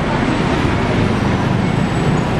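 Steady noise of busy road traffic: buses, cars and motorbikes running on the street below.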